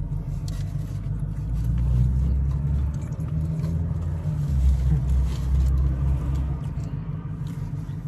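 Low vehicle rumble heard inside a car, getting louder twice: about two seconds in and again around five seconds.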